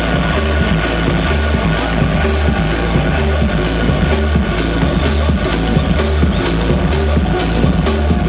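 Loud electronic dance music from a live act, played over a club sound system. It has a pounding, repeating bassline and a steady run of hi-hat ticks.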